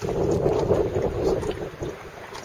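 Wind buffeting the camera's microphone: a low, rough rumble with no steady pitch that comes in suddenly at the start and eases off toward the end.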